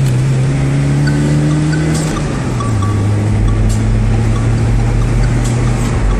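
The 70-horsepower engine of a 1998 Tofaş 1.6 SLX, heard from inside the cabin, pulling hard under full throttle. Its pitch climbs steadily, drops sharply about two and a half seconds in as at an upshift, then climbs again.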